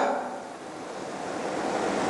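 Steady hiss of background room noise, with the tail of the preceding voice dying away at the start; the hiss grows slightly louder toward the end.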